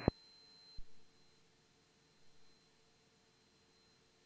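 Near silence on the aircraft's radio audio feed between transmissions: a faint steady high-pitched tone that fades, and one short click just under a second in.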